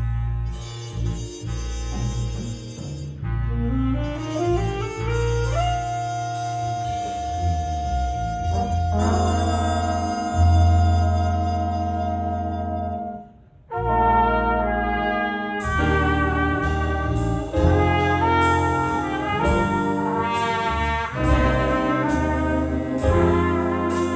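A big band playing live: saxophones, trombones and trumpets over piano and rhythm section. A rising glide leads into a long held note, there is a brief break about 13 seconds in, and then the full band comes back in with sharp accents.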